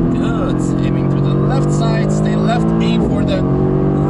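Mercedes-AMG GT R's twin-turbo V8 heard from inside the cabin under power on track, its note climbing with the revs and broken by an upshift about three seconds in.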